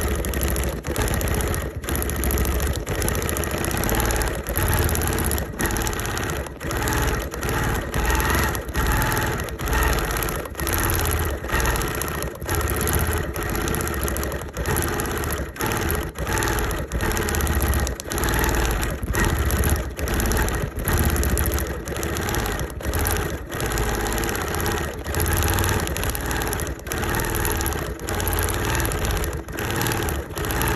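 Quilting machine running steadily as it stitches through the quilt's layers, with frequent brief dips in level as the stitching is guided around the appliqué pieces.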